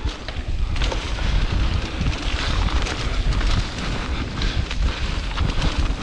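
Wind buffeting a GoPro's microphone as an electric mountain bike is ridden fast along a woodland dirt trail, with tyre and trail noise from the bike underneath.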